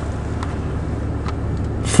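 2005 Honda Odyssey's 3.5-litre V6 idling, heard inside the cabin as a steady low hum, with two faint clicks.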